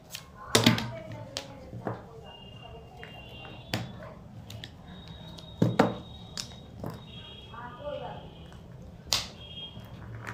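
Plastic connector-pen caps being pushed and snapped together by hand: a handful of sharp plastic clicks at irregular intervals, the loudest about half a second in and again near six seconds.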